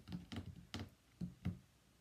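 A few faint, irregular light taps and clicks of hands touching and pressing on a chalkboard sign with a stencil transfer laid over it.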